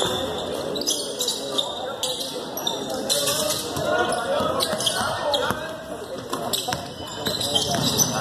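Basketball game sounds in a school gym: a ball bouncing on the hardwood court and players running, over the chatter of spectators.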